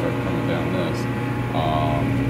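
Steady low hum of a BC 10 bottle vending machine running, most likely its refrigeration unit.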